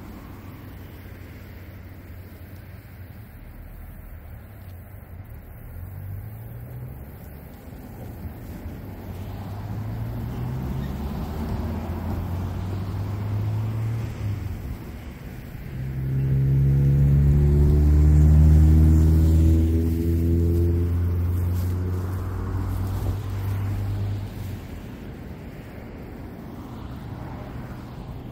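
Engine of a passing motor vehicle: a low drone that climbs in pitch in several steps, grows loudest a little past halfway, then fades away.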